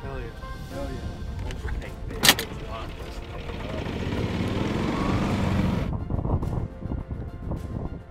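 Background music, with a single sharp knock a little over two seconds in. Then a few seconds of a golf cart driving, growing louder and cutting off suddenly near six seconds.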